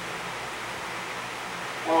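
Steady, even hiss of room tone during a pause in speech, with a man's voice starting again near the end.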